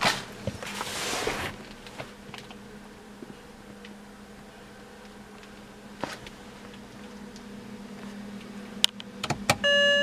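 Rustling handling noise inside a car cabin over a steady low hum. Near the end a few sharp clicks from the ignition key being turned are followed by a short electronic chime from the BMW's instrument cluster as the ignition comes on.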